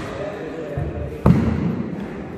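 Badminton rally on a wooden court: a sharp crack of a shuttlecock hit about a second in, with a low thud of a player's footwork, over voices in the hall.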